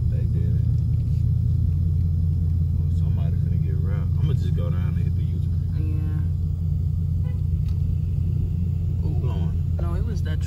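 Steady low rumble of a car's engine and tyres on the road, heard from inside the cabin while driving, with faint voices now and then.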